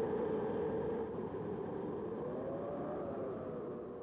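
Low, steady rumble with a faint hum that wavers slightly in pitch partway through, fading a little near the end before cutting off.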